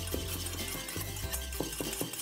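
A utensil stirring butter sauce in a small stainless steel bowl, with a few light clicks against the metal as the mustard mixture is folded in. Soft background music runs underneath.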